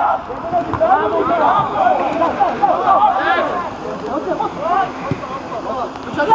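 Several players' voices calling and shouting at once across an outdoor football pitch, overlapping without a break.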